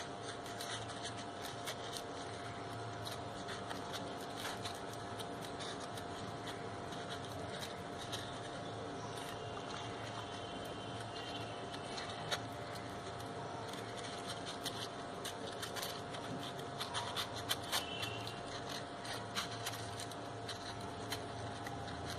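Faint rustling and rubbing of crepe paper as it is pushed out and shaped over the end of a pencil, with scattered small clicks and a little more handling noise near the end, over a steady faint hum.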